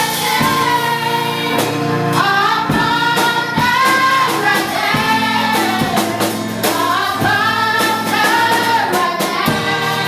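A gospel song sung by a choir of girls, led by a woman's voice on a microphone, with a drum kit keeping the beat.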